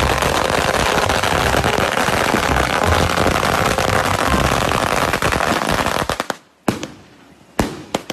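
A long string of firecrackers going off in a rapid, continuous crackle of pops, which stops about six seconds in, followed by a few single bangs spaced about a second apart.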